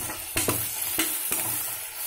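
Chopped onions and dal sizzling in hot oil in an enamel pot, stirred with a metal spoon that clicks and scrapes against the pot a few times.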